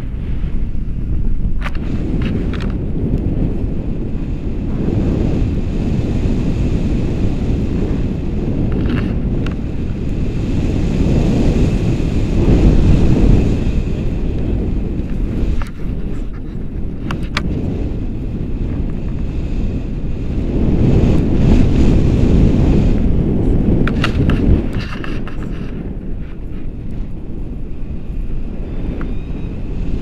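Wind buffeting an action camera's microphone in paraglider flight: a loud, steady low rumble that swells twice, with a few brief clicks.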